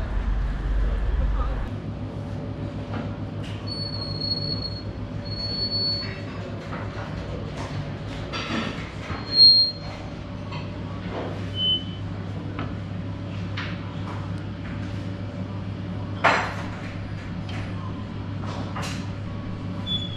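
Carousel wafer-baking machine turning: a steady mechanical hum with a few short high squeaks and scattered metallic clacks as its wafer irons go round.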